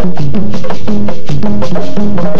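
Currulao music from a Pacific Colombian folk ensemble: drums and percussion strike a steady rhythm under a repeating melody of pitched notes.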